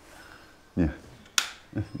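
A wall light switch clicked once, sharply, about one and a half seconds in. No light comes on: the house has no power.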